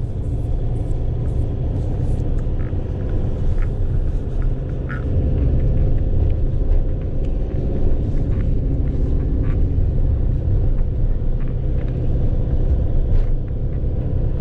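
Cabin noise of a Fiat van being driven: a steady low rumble of engine and road, with a faint steady hum and a few small clicks.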